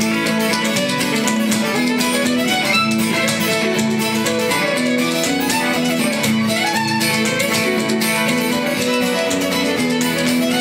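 Old-time fiddle playing a lively tune with strummed guitar accompaniment, with the quick percussive taps of Ottawa Valley step-dancing shoes on the stage floor running through it.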